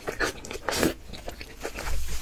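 Close-miked eating: curry sauce slurped from a bowl off a wooden spoon, two slurps in the first second, the second louder, then softer wet mouth clicks of chewing.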